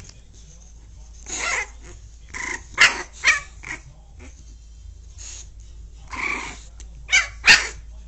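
A dog barking in short, loud bursts: a run of barks between about one and four seconds in, then a few more near the end.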